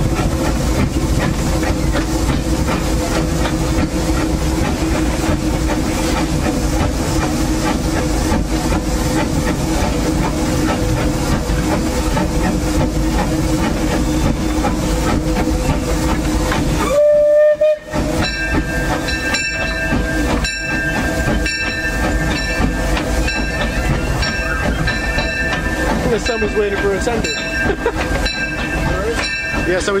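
Cab sound of the C.K. Holliday, a 4-4-0 steam locomotive, running: a loud, steady rumble and hiss. About seventeen seconds in there is a brief loud burst, after which a steadier high hiss goes on with a faint clatter about once a second.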